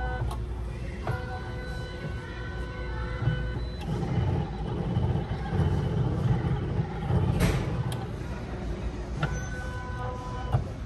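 Pet ID tag engraving kiosk at work, its motor whining in steady tones that start and stop. In the middle stretch there is a low rumble, with a sharp click about seven and a half seconds in.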